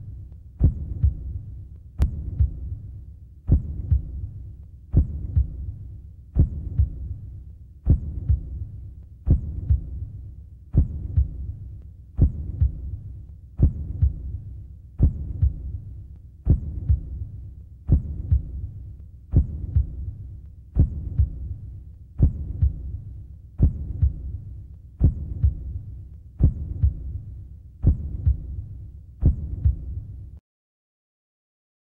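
A low, throbbing pulse laid over the pictures as a sound effect. It beats steadily about once every second and a half, each beat starting sharply and fading out, with fainter pulsing between the beats.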